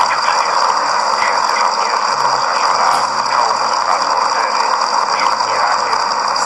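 Radio static: a steady rushing noise, strongest in the middle of the range, covers the broadcast, with a voice faintly heard beneath it.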